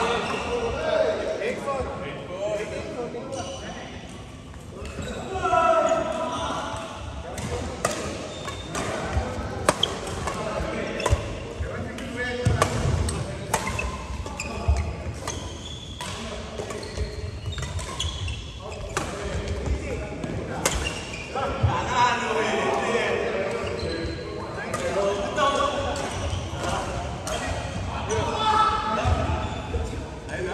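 Badminton rackets striking a shuttlecock in a rally: an irregular string of sharp hits, often about a second apart, with people's voices talking in the hall.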